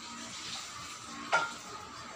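A single sharp clink of tableware with a short ring, about a second and a half in, over a steady low hiss.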